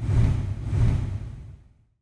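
Low whoosh sound effect on the logo end card. It starts suddenly, swells twice and fades out over a little under two seconds.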